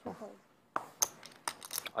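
Poker chips clicking together as they are handled and stacked, a string of sharp clicks from about the middle on.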